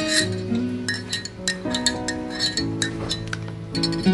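Instrumental background music: a melody of held notes with many sharp, bright clinks mixed in.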